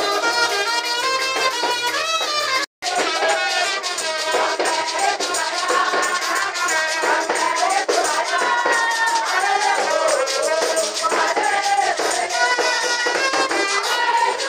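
Lively Ghanaian church praise music: voices singing over a keyboard, with hand percussion keeping a fast steady rhythm. The audio drops out completely for a split second a little under three seconds in.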